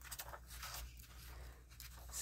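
Faint snips of scissors cutting magazine paper, over a low steady hum.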